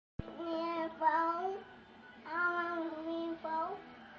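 A toddler singing in a high voice, four drawn-out phrases of held notes with short pauses between them. A short click sounds at the very start.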